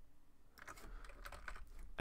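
Computer keyboard keys tapped faintly: a few scattered clicks, then a quick run of key presses from about half a second in.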